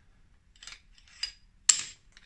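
A wrench tapping the end of a hooked screwdriver, metal on metal: two light taps, then a sharper, ringing clink near the end. Each tap drives the screwdriver's hook against the metal case of a crankshaft oil seal that was fitted backwards on a Harley-Davidson Sportster engine, working it out of its bore.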